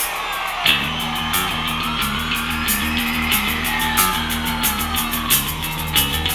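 Hard rock band playing live: electric guitars, bass and drums, with the bass and kick drum coming in under a second in.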